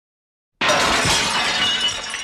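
Glass shattering: a sudden crash about half a second in, then ringing and tinkling glass that slowly fades.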